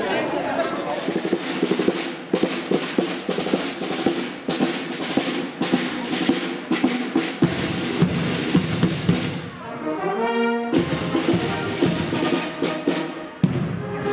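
Brass band playing a march, with a snare drum keeping a steady rhythm under the brass.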